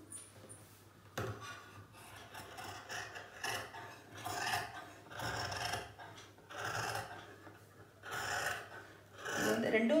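Large tailor's scissors cutting through fabric in a run of cutting strokes, about one a second, starting about a second in.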